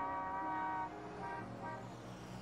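City traffic ambience with vehicle horns honking. A long horn note fades out about a second in and a shorter honk follows, over a steady hum of traffic.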